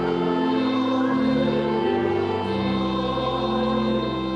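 Church choir singing slow, sustained chords with keyboard accompaniment.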